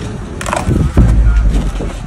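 Cardboard pizza box being handled and swung open: a rough crackling clatter with a knock about a second in, over a low rumble.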